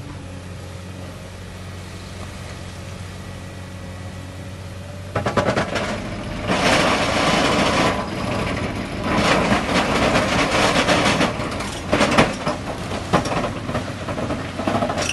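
Excavator engine humming steadily. About five seconds in, an eccentric vibratory ripper starts working into rock, giving a loud, rapid rattling hammer with crunching, breaking stone that comes in surges.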